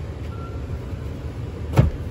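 Rear seat cushion of a Ford F-150 crew cab being flipped up, ending in one sharp clunk near the end, over a low steady rumble.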